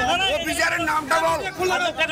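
Men talking, one voice to the fore with other voices overlapping behind it.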